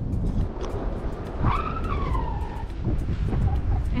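Wind buffeting the microphone in a low, steady rumble, with one high whistling call that rises and then falls for about a second near the middle.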